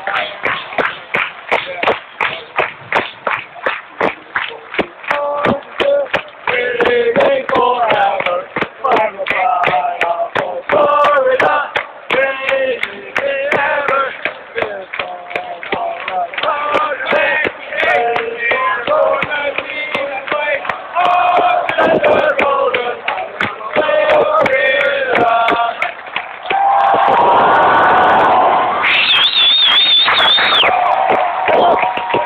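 A packed football stadium crowd claps in time, about three claps a second, for the first few seconds. Then tens of thousands of voices sing a school song together, ending on long held notes. A loud high cheer rises near the end.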